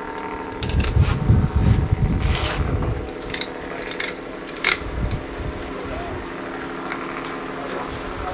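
Wind rumbling on the microphone for the first few seconds over a steady low hum, with a few scattered sharp clicks.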